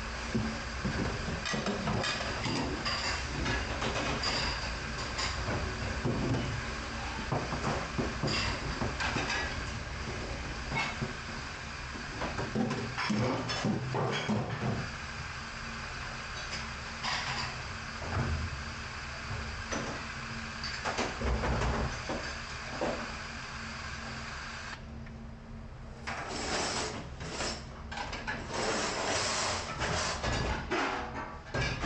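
Stainless steel pans knocking and scraping against a steel sink while being scrubbed in soapy water, over a steady mechanical hum of kitchen machinery. The clatter comes and goes, thinning in the middle and picking up again near the end.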